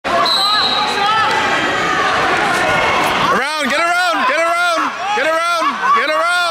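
Crowd chatter and mixed voices echoing in a gym. From about three and a half seconds, one voice yells a short word over and over, about twice a second, each call rising and falling in pitch, like a spectator or coach urging a wrestler on.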